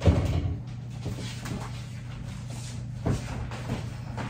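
A stainless French-door refrigerator door shutting with a thump, then a lighter knock about three seconds later, over a steady low hum.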